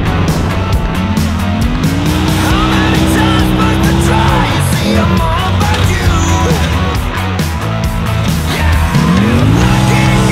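Polaris RZR Turbo four-seat side-by-side's engine revving up and holding high revs as it drives across a dirt track. The revs fall away about four seconds in and climb again near the end. Background music plays underneath.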